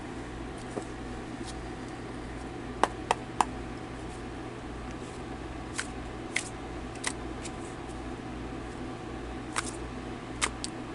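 A tarot deck being shuffled by hand, the cards sliding with sharp clicks as they knock together: three quick clicks about three seconds in, then a few more spread out, over a steady low hum.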